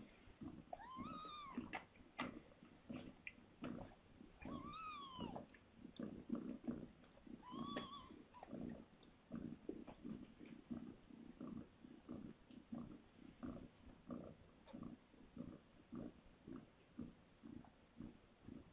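Newborn kittens mewing: three high, arching cries about a second, four and a half and eight seconds in, over soft low pulses that repeat about twice a second.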